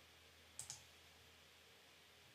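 Two quick computer mouse clicks close together about half a second in, with near silence around them.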